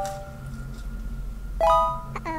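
Background music with bell-like chime sound effects. A ringing note dies away over the first half second, and a new bright chime chord is struck about one and a half seconds in.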